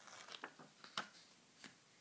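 A small picture book's paper page being turned by hand: faint rustling with a few short, sharp clicks, the loudest about a second in.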